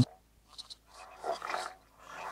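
Electroacoustic music built from electronically processed human voice: breathy, growl-like vocal fragments. A short crackle comes about half a second in, then a longer breathy burst, with near-silent gaps between them.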